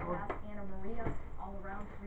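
Indistinct, untranscribed voices, with a couple of sharp knocks.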